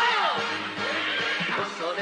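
Anime soundtrack music with a loud cry at the very start that rises and then falls in pitch over about half a second.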